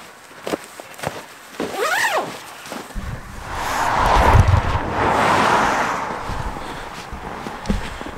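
Footsteps crunching in snow, then a car passing on the road: its tyre and engine noise swells over about a second, holds, and fades away over the next few seconds.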